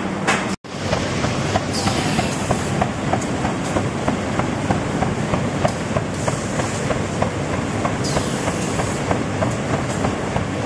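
Automatic folder-gluer-stitcher for corrugated cartons running: a steady mechanical din with quick, regular clicking as the machine feeds and delivers the boxes. The sound drops out for an instant about half a second in.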